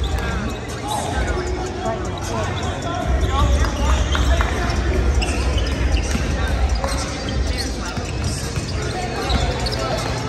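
Several basketballs being dribbled on a hardwood gym floor, a steady stream of bounces, with voices in the gym.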